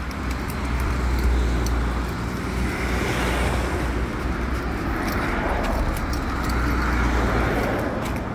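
Road traffic: cars passing on the road alongside, a steady rumbling hiss that swells about three seconds in and again toward the end.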